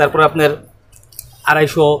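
A man speaking in short phrases, with a brief pause in the middle.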